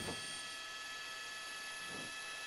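Faint steady hiss with a few thin, steady high whine tones: the background noise of a news helicopter's cabin heard through the reporter's headset microphone.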